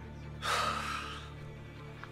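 A man's loud, breathy gasp about half a second in, lasting under a second, over steady low background music.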